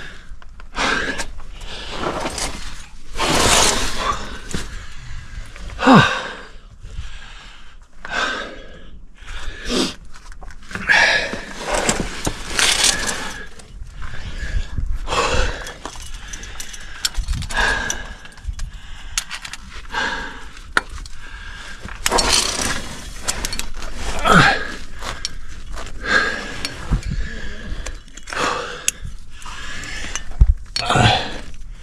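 A climber's hard, irregular breathing and gasps as he works up a sandstone chimney, mixed with scraping against the rock and the clinking of carabiners and cams on his rack.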